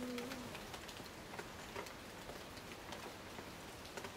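Rain falling in a rainforest: a steady patter with many separate drops ticking. A bird's low, steady call, already sounding as it begins, ends about half a second in.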